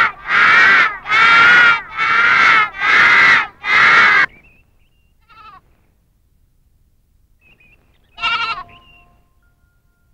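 A group of children laughing loudly together in rhythmic bursts of about half a second each. The laughter breaks off about four seconds in. The rest is mostly quiet, with a brief pitched sound about eight seconds in.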